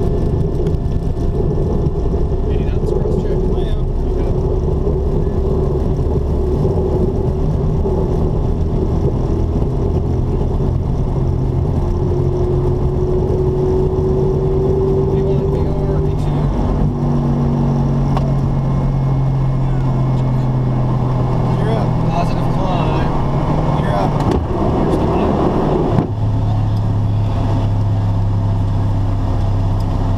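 Hawker 800SP business jet's twin turbofan engines at takeoff power, heard from inside the cockpit, over the rumble of the takeoff roll. About 26 seconds in, the rumble stops suddenly as the jet leaves the runway, leaving a steadier engine drone.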